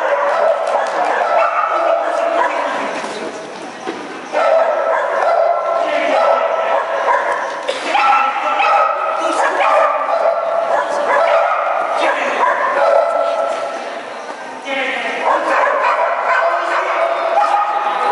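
Dogs barking and yipping almost without a break, with people's voices mixed in.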